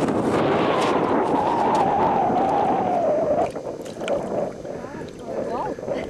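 A loud steady rushing noise that drops away about three and a half seconds in. Then quieter water splashing as a hooked fish thrashes in an ice-fishing hole.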